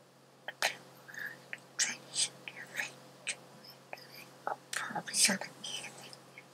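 A person's breathy, whispery mouth sounds: a scattered run of short hisses and mouth clicks, the loudest a little after five seconds in.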